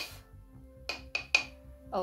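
Three quick, light taps of a makeup brush against the powder container, knocking excess loose powder off the brush, over soft background music.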